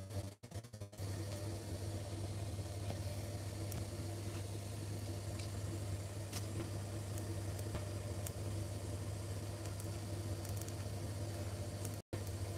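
Steady low machine hum with a few faint ticks over it.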